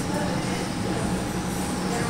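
Steady low hum holding at one level throughout.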